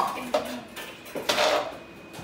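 Metal cooking utensils clinking and scraping against pots and pans, with the loudest clatter about one and a half seconds in.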